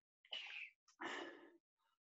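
Two short breathy sounds from a person, like sharp exhalations, about half a second apart.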